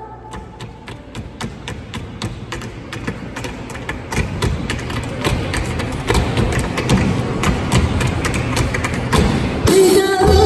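A live band between songs: sharp rhythmic clicks, about four a second, over low thudding that grows louder. Full band music starts just before the end.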